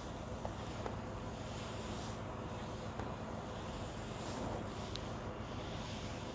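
Hot oil sizzling softly and steadily in a cast-iron kadai as garlic cloves and whole spices fry, with a few faint pops.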